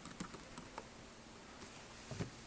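Faint computer keyboard typing: a few scattered keystrokes, mostly in the first second, as a password is entered at a git push prompt.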